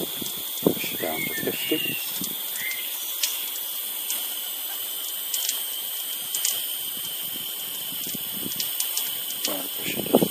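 Live steam injector running, a steady hiss and rush of steam and water with a few faint clicks, as it keeps feeding water into the boiler while the unfired boiler's pressure falls.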